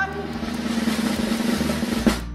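Snare drum roll sound effect: a fast, continuous roll that cuts off suddenly at the end.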